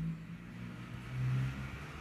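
A man's voice holding a low, drawn-out tone that trails off, then a short low hum about a second in, over a faint steady background hum.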